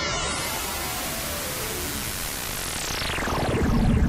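Electronic whoosh sound effect: a hiss that sweeps up and holds, then sweeps down and falls away near the end, trailing fading echoes, over background music.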